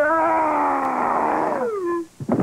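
Grover, the Muppet, gives a long, loud drawn-out vocal cry held for nearly two seconds, its pitch sagging slowly and then sliding down at the end.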